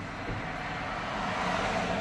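Traffic road noise heard from inside a car cabin: a steady hiss of tyres on the road over a low rumble, growing louder toward the end.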